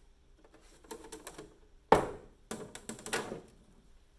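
Handling noise: a run of light clicks and taps, with one sharp knock about two seconds in.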